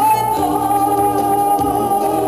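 A singer on stage holding one long note over an instrumental backing track; the note slides up into pitch at the start and then holds steady.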